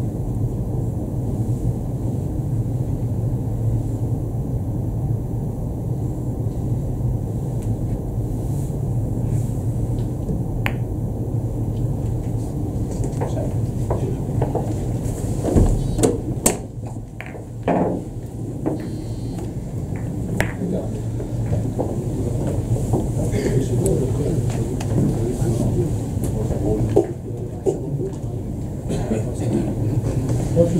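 Billiard balls clicking, a cluster of sharp knocks about halfway through and a few more near the end, over the steady low hum of the hall and faint voices.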